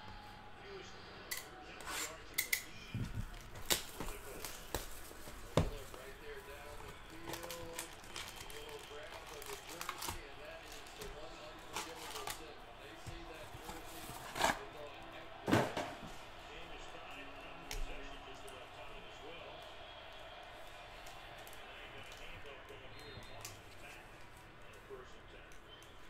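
Foil trading-card packs and their cardboard box being handled: scattered sharp crinkles, taps and knocks, the loudest two about halfway through.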